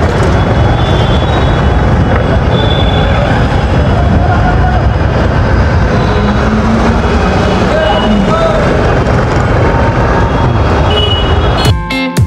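Steady traffic noise on a busy street, with voices in the background. Guitar music starts near the end.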